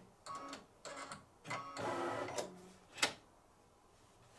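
Computerised embroidery machine moving its hoop carriage: irregular short bursts of motor whirring and clicking, a sharp click about three seconds in, then the machine stops and goes quiet.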